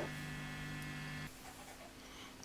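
Steady mains hum from a powered-up Traynor YCV40 valve guitar amplifier. It cuts off a little over a second in, leaving fainter room tone.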